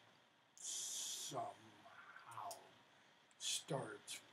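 Quiet, low-level speech: a short hissing sound about half a second in, then a few faint muttered words.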